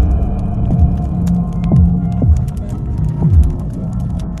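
Instrumental music intro: a low, steady droning hum with deep thuds that slide down in pitch, four of them at uneven spacing, over faint scattered crackles.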